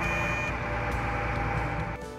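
Wheel loader running with a steady engine rumble and noise, and a reversing alarm beeping that stops about half a second in.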